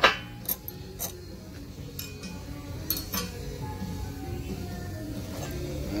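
A few light metallic clinks and taps as a chrome hydraulic pump motor is taken apart by hand and its end cap comes off, the sharpest right at the start, with quiet background music underneath.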